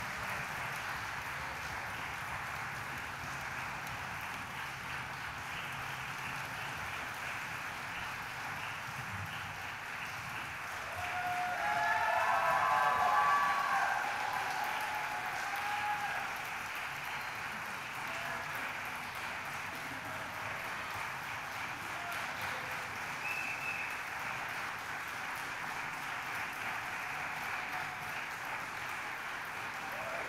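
Audience applauding steadily in a concert hall. Cheers and whoops rise above it for a few seconds about a third of the way through.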